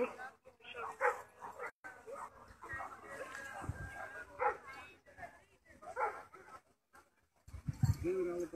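A dog barking several times, short single barks a second or more apart, with people talking in the background.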